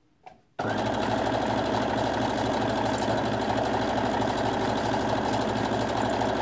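Electric sewing machine stitching steadily at a constant speed. It starts abruptly about half a second in, just after a small click.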